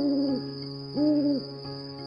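Two owl-like hoots, each rising, holding and falling, the first at the start and the second about a second in, over a steady electronic lullaby melody with a high steady chirring tone, as from a baby soother toy playing nature sounds.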